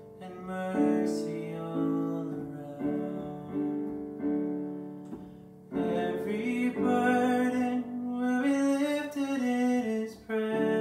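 Casio Privia digital piano playing slow, sustained chords that fade away over the first half. A man's singing voice comes in over the piano about six seconds in, and the passage grows louder.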